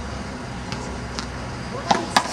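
Handball rally: a sharp smack of the rubber ball being hit near the end, with fainter ball hits before it, over a steady low background hum.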